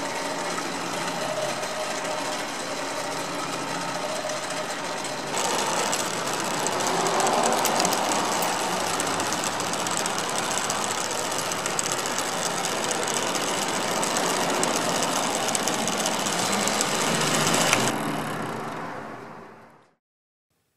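Small electric gear motor driving the wooden drum and wooden feed screw of a home-built phonautograph, a steady mechanical whirring and grinding. It grows louder and harsher about five seconds in, then fades away near the end.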